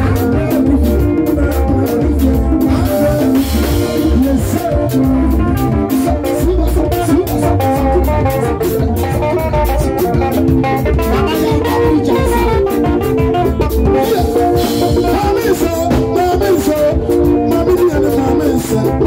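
Live band music, loud and continuous: electric guitar and drum kit with hand drums keeping a steady beat, and amplified singing.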